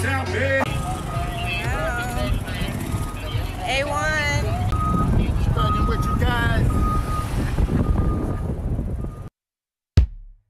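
Concert music cuts off about half a second in, giving way to people talking inside a car over a steady low rumble. A short steady electronic beep sounds several times at intervals.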